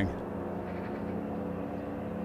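Stock ambience recording of a lake with distant motorboats playing back: a steady engine drone with no change in pitch.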